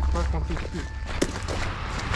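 A man speaking briefly in Portuguese, trailing off about a second in, over a steady low rumble, with a single sharp click just after a second.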